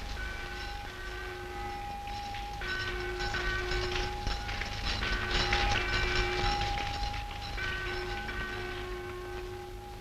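A train running with a steady low rumble, sounding long held whistle blasts. There are three long blasts with short breaks, at about two and a half and seven and a half seconds in.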